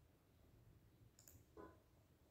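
Near silence: room tone with a faint click a little over a second in and a soft knock just after it.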